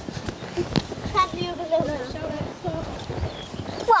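A grey pony's hoofbeats as it canters on a sand arena surface.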